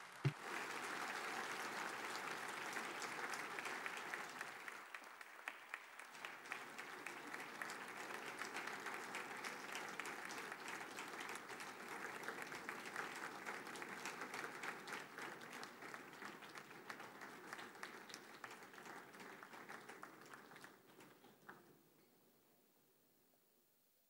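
Audience applauding steadily for a long stretch, thinning out and dying away near the end.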